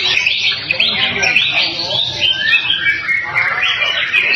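Many caged songbirds singing and chirping at once in a loud, dense chorus of overlapping calls.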